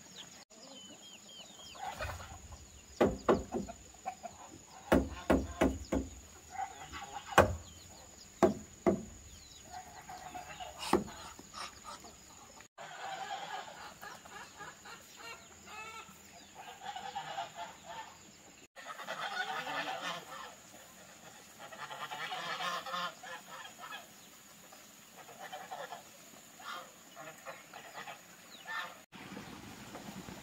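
A white domestic duck or goose-type waterfowl calling over and over in short honking bursts. Before the calls start, about two to eleven seconds in, comes a run of sharp, loud knocks.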